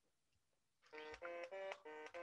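Near silence, then about a second in a run of short synthesized beeping notes starts, about four a second at changing pitches: the Elixir DSL's note player sounding the notes of the test sequences as raw audio.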